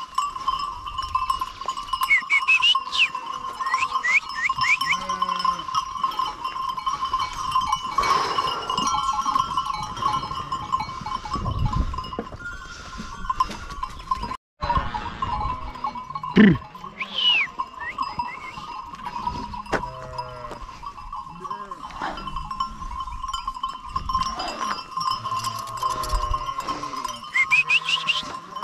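A flock of sheep bleating in a pen, many overlapping calls at different pitches coming and going, over a steady high ringing tone.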